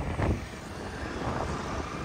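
Wind rushing over the microphone on a moving scooter, with the low rumble of the scooter and road underneath; a little louder for the first half-second, then steady.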